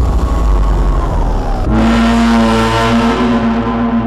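Stage sound effects: a low rumble, then about 1.7 s in a sudden ringing, gong-like tone that holds steady.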